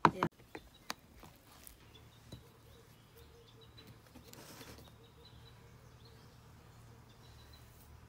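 A sharp knock right at the start and a few lighter clicks, from the plate and the knife being handled, then faint outdoor background with occasional bird chirps.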